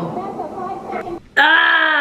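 A woman's voice breaking into a long, loud, held wail a little over halfway through, after a quieter, muffled stretch.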